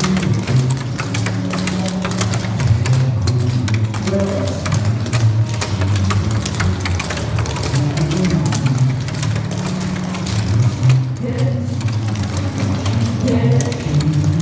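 Rapid clogging steps: the double taps of clogging shoes clicking fast on a wooden stage floor, over a pop song with a singer playing on a sound system.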